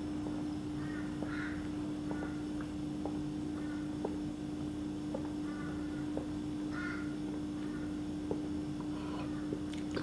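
A man taking a long drink of beer from a glass mug: faint swallowing clicks every half second to a second over a steady low hum.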